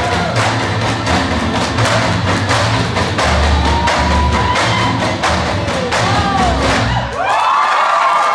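Dance music with a steady beat, overlaid by regular sharp clacks of bamboo poles striking the floor and each other for a tinikling dance, with shouts and whoops from the audience. About seven seconds in the music stops and cheering and applause take over.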